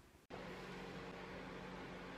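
Room tone: a faint, steady hiss with a low hum, starting suddenly about a third of a second in after a moment of dead silence.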